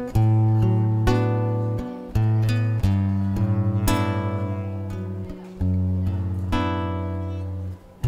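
Acoustic guitar strummed in slow chords, a new chord struck every second or so and left to ring, as an instrumental introduction before the singing starts.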